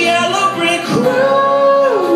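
Male singer's wordless high vocal, live, holding one long note about halfway through that drops to a lower note near the end.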